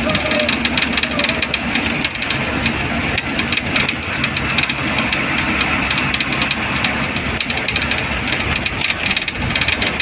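Inside a moving bus: the engine runs steadily under road noise, with a constant fine clatter of rattling fittings.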